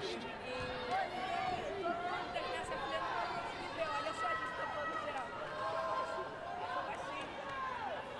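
Arena crowd: many overlapping spectators' voices chattering and calling out over a steady hum of murmur.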